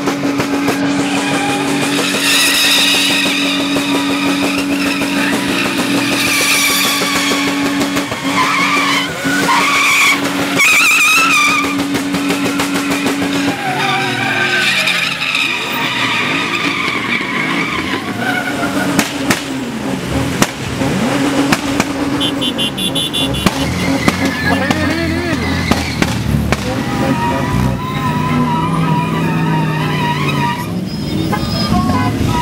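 Pickup trucks spinning donuts and drifting: tyres squealing in long wavering screeches over engines held at high revs. About halfway through, the steady engine note gives way to revs rising and falling.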